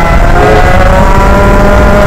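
Rotax Max 125 single-cylinder two-stroke kart engine running hard and accelerating, its pitch rising steadily, heard close up over heavy low rumble.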